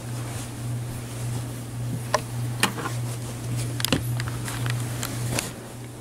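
A steady low hum, like a small room fan or ventilation, with a few sharp clicks and light rustles from the camera being handled among clothes.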